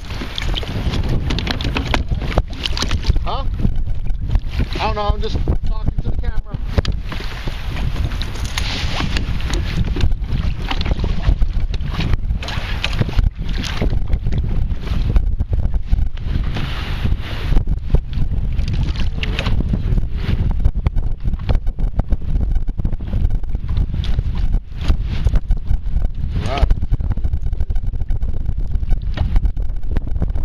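Wind buffeting the microphone in a steady low rumble, with choppy water around a kayak.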